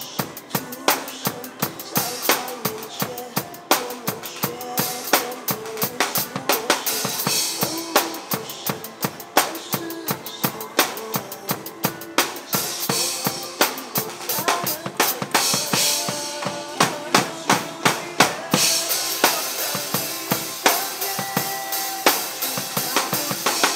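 Acoustic drum kit played live in a busy pop groove, kick, snare and cymbals hit in quick succession over instrumental backing music with no singing. The cymbals wash out more brightly in the last few seconds.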